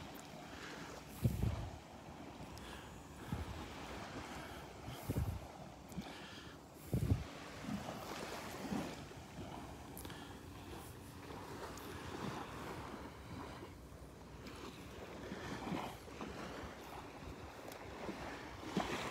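Shallow seawater lapping and rippling gently at the shoreline, with wind on the microphone giving a few low thumps in the first half.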